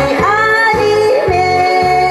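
A woman singing a Korean trot song live into a microphone over a backing track with a steady bass beat; the melody settles into a long held note about halfway through.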